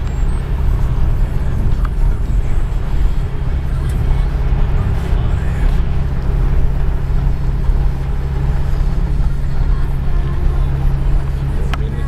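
A car's engine and tyre drone heard from inside the cabin while it drives on a snow-covered road: a steady low rumble that holds an even level throughout, with a single light click near the end.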